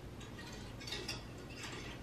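Faint handling sounds of glass-and-metal lanterns and books being adjusted on a wooden bench: soft rustles and light clicks about a second in and again near the end, over a low steady room hum.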